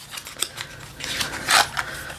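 A small lipstick box being opened by hand and its contents handled: scratchy rustling with light clicks, louder for a moment about one and a half seconds in.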